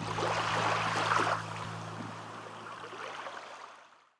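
Sea washing on the shore, a hissing swell about a second in that then eases off, over a steady low hum; the sound fades out near the end.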